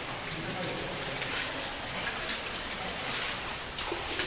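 Steady rush of running water in a cave streamway, with a few faint splashes from cavers wading through it.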